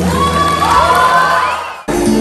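Concert audience cheering and whooping, with several rising shouts over the tail of the live band's music. Near the end the sound cuts off abruptly and loud band music starts again.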